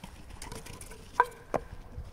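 Thrown wooden kyykkä bat striking the wooden pins: two sharp wooden clacks about a second in, a third of a second apart, the first the louder, each with a short ring.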